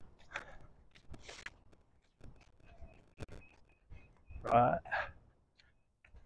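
Mostly quiet outdoor sound with a few faint clicks and short high chirps; about four and a half seconds in, a man's distant voice says a short word or two, the loudest sound here.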